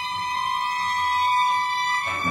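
Clarinet and string quartet holding one long, high note that swells slightly in loudness, part of a slow lament.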